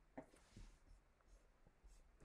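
Near silence: room tone in a pause between sentences, with a faint brief click just after the start.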